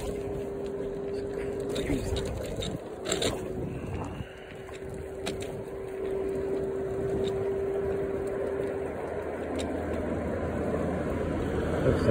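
Electric scooter running along at cruising speed: a steady motor whine with wind and wheel noise, and a few light clicks. The whine drops out briefly about two seconds in and stops about nine seconds in, leaving a low hum.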